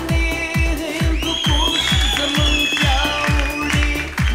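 A man singing an Afghan pop song into a microphone over dance-pop accompaniment, with a steady kick-drum beat about two and a half times a second. A long held note runs through the middle.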